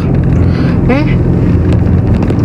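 Steady low rumble of road and engine noise inside a moving car's cabin, with a short vocal sound about a second in.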